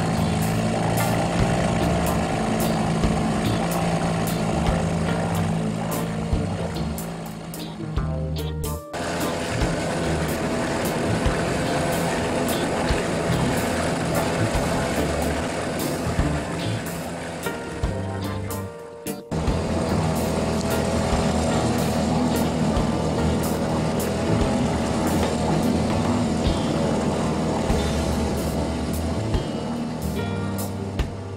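Small dinghy outboard motor running steadily under way, with background music over it. The sound cuts out sharply twice, about 9 and 19 seconds in.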